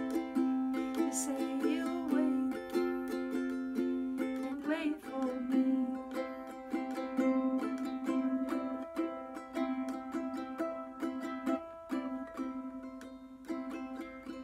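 Wilkinson concert ukulele strummed in repeated chords, the strokes slowly getting softer before one last strum near the end.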